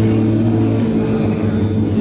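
Live rock band holding a loud, steady drone of sustained low notes through the venue's PA, heard from the audience.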